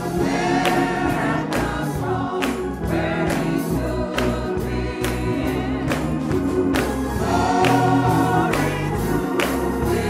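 A gospel choir singing in full voice, with handclaps marking the beat throughout.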